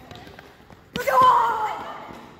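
Sneakers thudding and knocking on a gym floor as children run, then a child's high shout starting about a second in, lasting about a second and fading.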